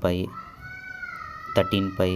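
One long high-pitched cry held for about a second and a half, falling slightly in pitch, with brief bits of a man's speech at the start and near the end.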